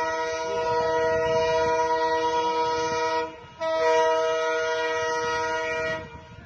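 Railway locomotive air horn sounding a long blast that breaks off about three seconds in, followed at once by a second long blast; several notes sound together as a chord.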